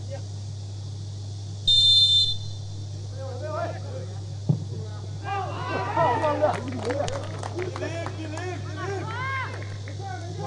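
A short single blast of a referee's whistle about two seconds in, over a steady low hum. From about five seconds on, several voices call out on the pitch.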